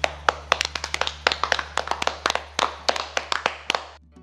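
A small group of people clapping their hands, a quick irregular run of claps that thins out and stops near the end.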